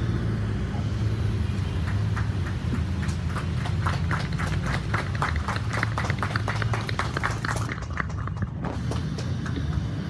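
Room noise with a steady low hum and a run of quick, light taps or knocks, several a second, from about two seconds in until near the end.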